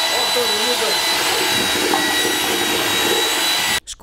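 Electric drill with a mixing paddle running at steady speed in a bucket, stirring plaster mix: a loud, even motor whine that cuts off suddenly near the end.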